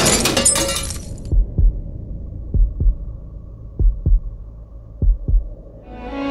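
Car-crash sound effect, glass shattering and debris clattering, dying away about a second in. It is followed by a dramatic heartbeat sound effect: four slow double thumps over a low steady hum.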